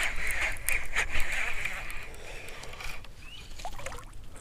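Baitcasting reel being cranked to bring in a hooked bass, a steady whirring that fades out about two seconds in, with a few sharp clicks or knocks in the first second and a half.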